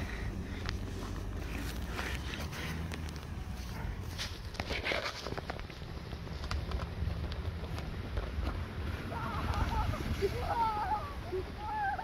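Diesel Nissan X-Trail driving slowly over packed snow and ice, its engine a low steady rumble, with scattered crunching clicks. A person's voice comes in near the end.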